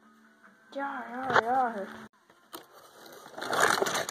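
A person's voice making a wordless wavering sound for about a second, then rustling and clattering handling noise with scattered clicks as the phone is moved about.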